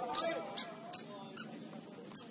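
Indistinct voices with four short, sharp sounds about half a second apart.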